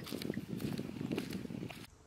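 Footsteps on a gravel road at a walking pace, a run of uneven steps that cuts off abruptly just before the end.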